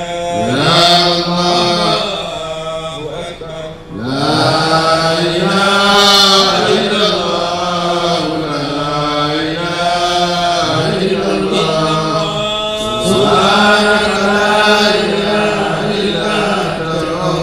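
Men's voices chanting an Arabic devotional recitation into microphones, in long drawn-out melodic phrases, with a short break about four seconds in.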